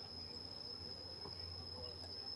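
Insects in tropical trees making a steady, high-pitched, unbroken drone.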